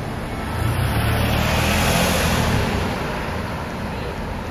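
A car driving by on the street. Its engine rumble and tyre noise swell to a peak about two seconds in, then fade.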